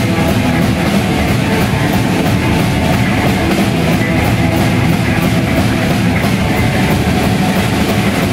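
Live rock band playing loudly: electric guitar, bass guitar and a drum kit, with cymbals keeping a steady, even beat.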